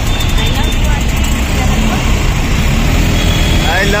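Riding in a moving vehicle through city traffic: a steady low rumble of engine and road noise, with a faint thin high tone twice.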